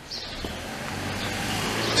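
A car approaching along the street, its tyre and engine noise swelling steadily.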